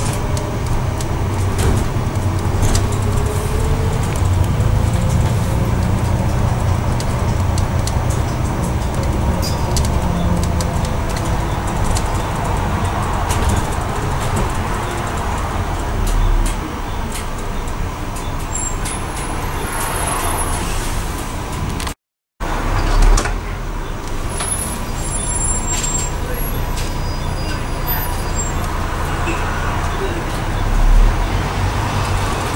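Bus engine and drivetrain running steadily under way, with road noise, heard from inside the bus. A whine rises and falls in the first few seconds, and the sound cuts out for a moment about three-quarters of the way through.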